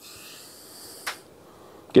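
A man drawing a long breath in through his nose as he smells an unlit cigar, ending in a short, sharper sniff about a second in, followed by a fainter breath.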